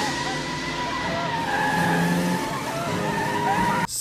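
A car's engine running with its tyres skidding on the road, a steady whine with short squealing glides over it. It cuts off suddenly near the end.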